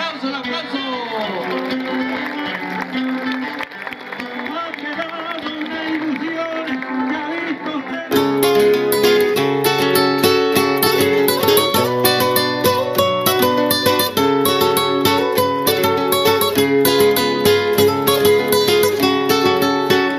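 Several people's voices and calls for the first eight seconds. Then acoustic guitars start playing a folk song intro: strummed and plucked, with a steady beat.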